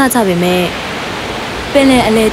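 Narration stops shortly after the start, leaving about a second of steady hissing noise, a rain-and-rough-sea storm background, before the voice picks up again near the end.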